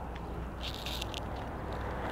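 Low steady outdoor background noise with a faint rustle about halfway through; no distinct event.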